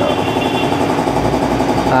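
Motorcycle engine idling steadily, an even, fast-pulsing running sound.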